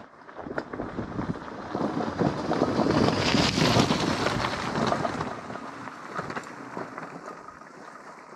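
Two loaded gravel bikes rolling past over a rough stony track: tyres crunching and clicking on loose stones, loudest about three to four seconds in, then fading as they ride away. Wind noise on the microphone throughout.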